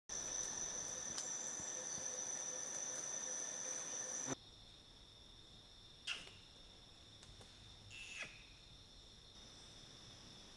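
Rainforest insects buzzing in several steady high-pitched tones. The sound is loud at first and drops suddenly to a quieter level about four seconds in. Two brief sharp sounds come about six and eight seconds in.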